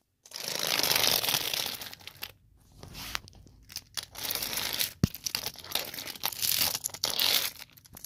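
Rustling, crinkling handling noise in uneven bursts as small plastic toy trains are pushed by hand along plastic track, with a sharp click about five seconds in.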